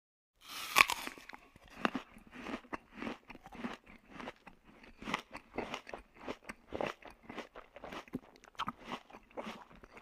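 Close-up crunching and chewing of a crispy cone-shaped corn snack (UniCone). One sharp, loud first bite comes about a second in, then quick irregular crunches continue as it is chewed.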